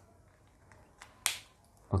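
A single short, sharp click a little over a second in, against a quiet room.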